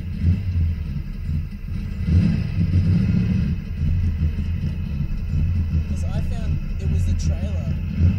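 Mazda 323 turbo's engine rumbling steadily, heard from inside the car's cabin, swelling briefly a couple of seconds in.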